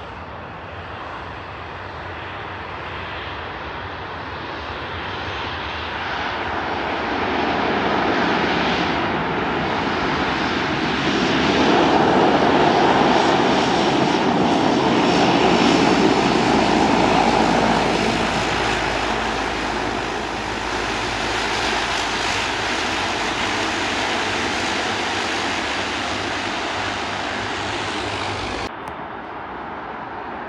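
De Havilland Canada Dash 8-100 twin turboprop (Pratt & Whitney Canada PW120-series engines) rolling along the runway after landing, a steady propeller and engine hum. It grows louder as the aircraft comes closer, is loudest about halfway through, then eases off. The sound drops suddenly shortly before the end.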